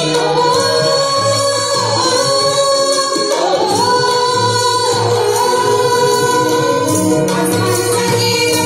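Women's chorus singing a melody in unison with live instrumental accompaniment, the voices holding long notes and sliding between them over a steady drum beat.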